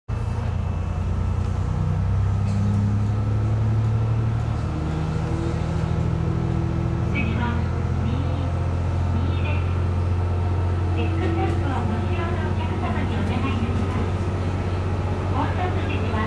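KiHa 220 diesel railcar's engine running under power as the train pulls away from a station, heard from the driver's cab. It is a loud, steady low drone whose pitch steps up in the first few seconds as the railcar gathers speed, then holds.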